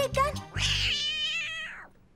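Cartoon cat's voiced meow: one long, wavering call starting about half a second in and fading out just before the end. Background music stops about a second in.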